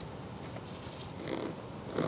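Kitchen knife cutting through a lime held in the hand, with faint rasping cuts of the blade through the peel.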